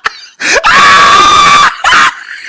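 A woman screaming in fright: one loud, high scream held steady for about a second, with a short cry just after.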